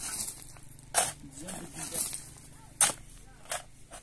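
Long-handled shovel scraping and biting into dry, stony earth and gravel: several sharp scrapes about a second apart, the loudest near three seconds in.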